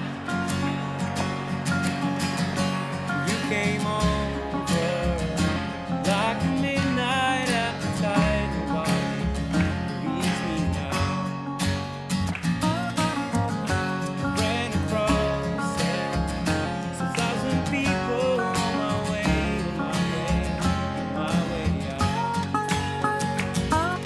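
Live acoustic band music: an acoustic guitar part with a low bass line coming in about four seconds in and a melody line over it, the song's lead-in before the vocals.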